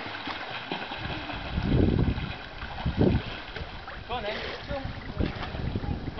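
Swimming pool ambience: water splashing and lapping, with wind buffeting the microphone in a few low gusts. There is a cough at the start and a child's high-pitched voice about four seconds in.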